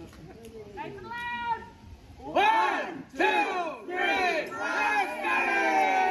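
A group of people shouting together in unison: a voice calls out first, then four loud shouts follow about two-thirds of a second apart, breaking into a long drawn-out group cheer near the end.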